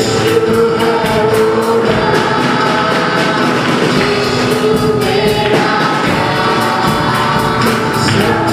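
A choir singing a gospel worship song, with a steady percussion beat that drops out for a couple of seconds in the middle.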